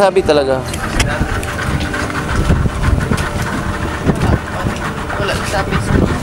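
Motorboat engine running with wind rumbling on the microphone, and brief voices at the start and again near the end.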